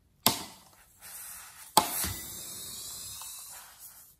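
Scissors snipping into a filled latex balloon: two sharp snips about a second and a half apart, the second followed by a steady hiss of about two seconds as the slit balloon gives way.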